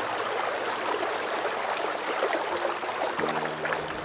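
Rushing river water picked up by a GoPro action camera on a flotation device: a steady, dense rush of moving water.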